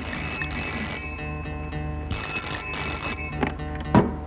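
Black desk telephone's bell ringing in two long rings with a short gap between them, then a clack near the end as the handset is lifted.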